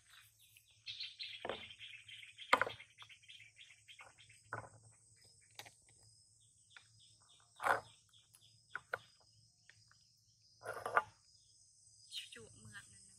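Outdoor insects buzzing steadily and high, with a bird's fast run of repeated chirps in the first few seconds. A few short knocks and clicks come through as well, the loudest about two and a half seconds in, near eight seconds and near eleven seconds.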